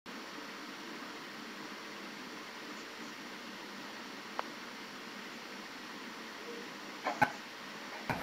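Steady background hiss of room noise. A faint click comes about four seconds in, and a brief clatter ending in a sharp knock comes about seven seconds in.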